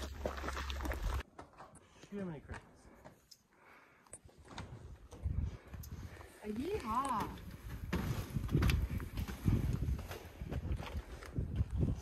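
Footsteps on the metal-tread steps and boards of a lookout platform, a run of irregular knocks and thumps in the second half, with quiet talking. A low rumble at the start stops abruptly about a second in.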